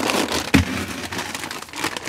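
Plastic grocery bag and frozen-food packaging rustling and crinkling as items are pulled out and handled, with one sharp knock about half a second in.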